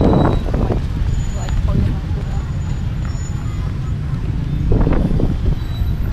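City street traffic of motorbikes and cars, a steady low rumble, with brief bursts of people's voices at the start and again about five seconds in.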